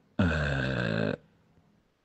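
A man's low, drawn-out vocal sound lasting about a second, a held 'ehh' like a hesitation filler, then silence.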